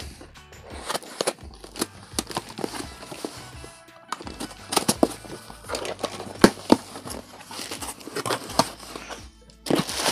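A cardboard shipping box being opened by hand: irregular scrapes, crinkles and sharp clicks as the packing tape and flaps are worked loose.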